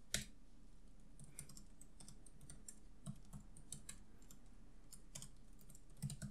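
Faint, irregular keystrokes on a computer keyboard as a line of code is typed, with one sharper key click just after the start.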